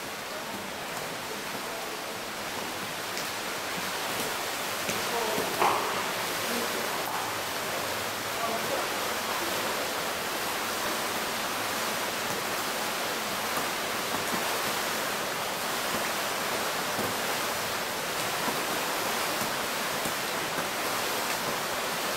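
Continuous splashing of many swimmers churning the water in an indoor pool, a steady wash that builds a little over the first few seconds. A short shout rises above it about five and a half seconds in.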